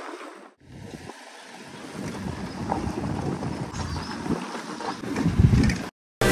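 Motorcycle riding on a gravel dirt track, engine and tyre rumble under wind buffeting the microphone, growing louder near the end as it comes close.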